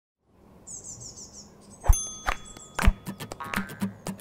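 Opening of a title-sequence jingle: high bird-like chirps for about a second, then a few sharp percussive hits, the first followed by a ringing chime, as pitched music starts up near the end.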